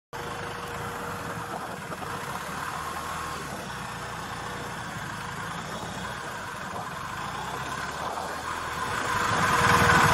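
Police motorcycle engine running at low speed as the bike rolls along, with a thin steady tone over it. It grows louder near the end.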